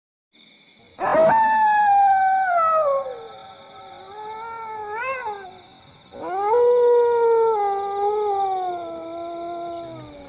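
Two long canine howls, each sliding slowly down in pitch. The first starts about a second in and swells briefly upward near the middle; the second begins about six seconds in, lower, and holds nearly to the end.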